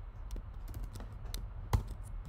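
Typing on a computer keyboard: a few scattered keystrokes, the sharpest about three quarters of the way through.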